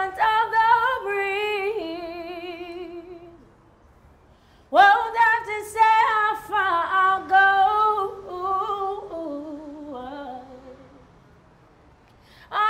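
Solo female voice singing a cappella, held notes without clear words. A long note with vibrato fades out, and after a short pause a new phrase swoops up into the note and then winds down through falling notes.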